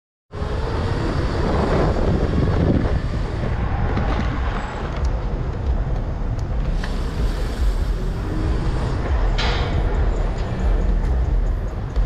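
Wind buffeting a helmet-mounted microphone, with road rumble underneath, while riding a modified 72-volt Razor electric ride at speed.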